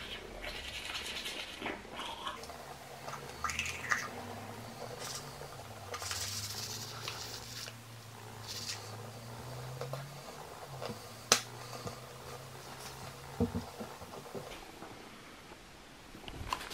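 Manual toothbrush scrubbing teeth, in irregular bursts of brushing strokes, with a low hum underneath and one sharp click about eleven seconds in.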